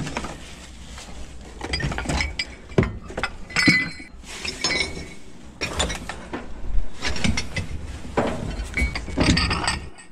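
Ceramic dishes (cups, bowls and small plates) clinking and knocking against each other as they are handled and packed into a cardboard box: irregular clinks, a few of them ringing briefly about four seconds in.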